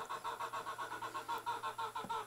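A bird calling in a rapid, even run of short nasal notes, about ten a second.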